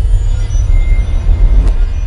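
A loud, deep rumble from a logo intro sound effect, with a few faint thin high tones above it.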